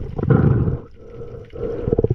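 Underwater water noise: a low, gurgling rush of water around the camera in two surges, the first loudest about half a second in and the second near the end, with scattered faint clicks.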